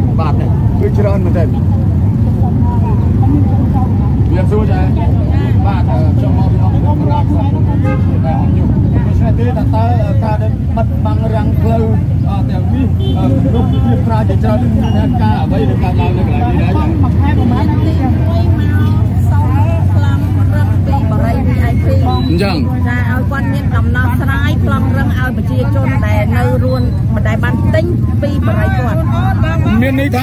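A woman talking into microphones held up close, over a steady low rumble.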